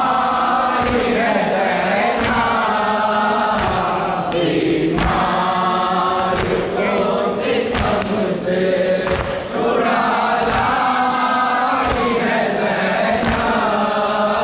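Men chanting a Muharram lament in chorus behind a lead singer on a microphone, with rhythmic chest-beating (matam) thuds about once a second.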